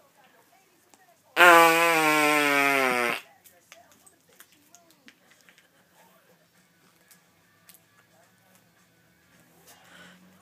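A fake fart noise made by a man: one long, loud buzzing blast lasting nearly two seconds, starting about a second and a half in, its pitch wavering and sagging slightly as it goes.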